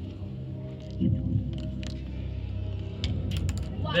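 A glass marble rolling and clicking down a track of wooden craft sticks, with a few sharper light clicks near the end as it drops into the wooden catch tray.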